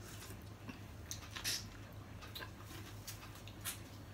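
Faint eating sounds of seafood eaten by hand: scattered small clicks and smacks of chewing and handling food, with a brief louder noise about a second and a half in, over a low steady hum.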